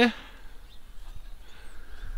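A man's voice ends a short spoken question, then quiet outdoor background with a low, steady rumble and no clear event.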